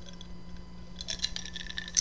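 Low steady background hum, with a cluster of faint soft clicks in the second half.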